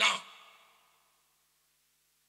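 A man's voice finishing a spoken word at the very start and trailing off within the first second, then near silence.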